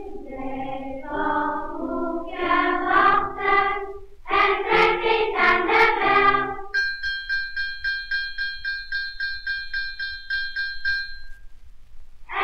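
Children's choir singing on a circa-1930 78 rpm shellac record, over a constant low surface rumble. About seven seconds in the voices stop and a single-pitched bell rings in quick repeated strokes, about four or five a second, for some four seconds.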